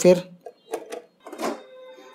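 A few light metallic clicks and knocks from a thin metal LED-TV bezel frame as it is worked loose and lifted off the panel, the loudest about one and a half seconds in.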